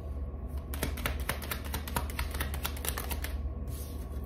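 Tarot deck being shuffled by hand: a quick, dense run of card clicks and flicks from about a second in until near the end.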